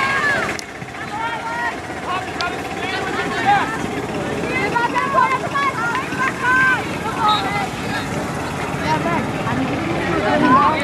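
Indistinct calls and shouts from several players and spectators around a field hockey pitch, over a steady low rumble of wind on the microphone.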